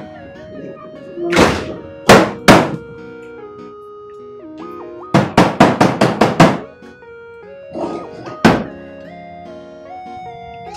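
An open palm slapping the side of a faulty flat-screen TV to get it working: a few single smacks, then a quick run of about seven, then two more. Background music with sustained tones plays underneath.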